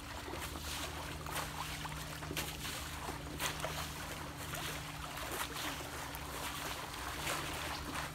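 Pool water sloshing and splashing as boards are shoved through it to stir up waves, with short splashes coming again and again. A steady low hum runs underneath.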